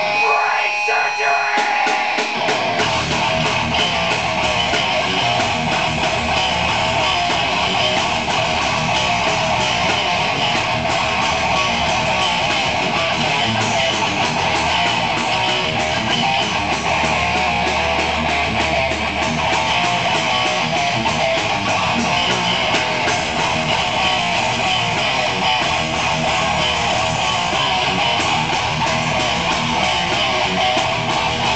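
Live rock band playing loud, dense music led by electric guitars, with the low end of the full band coming in about three seconds in.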